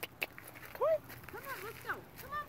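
A person's voice making short, wordless sounds that rise and fall in pitch, the loudest about a second in, with a few more soon after. There are two light clicks at the very start.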